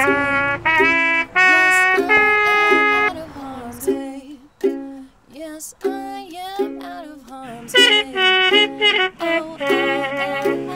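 Ukulele being played in short plucked and strummed notes, with a woman singing loud held notes over it at the start and again near the end.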